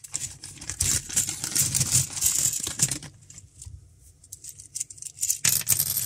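A clear zip-lock plastic bag crinkling and rustling as it is pulled open and a bundle of thin wooden counting sticks is drawn out of it. The crinkling is busiest for the first three seconds, goes quieter, then starts again near the end.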